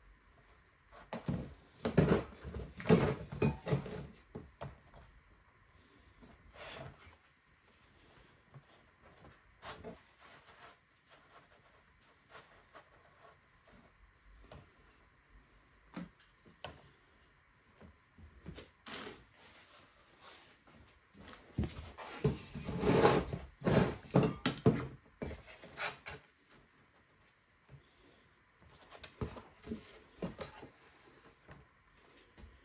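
Knocks and clatter of spray cans and boards being handled on a work table. There are scattered single knocks and two busier spells of clattering, one near the start and one about three-quarters through.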